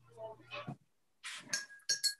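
A glass water jar set down on a table with a short scrape, then a sharp clink of glass near the end that rings briefly.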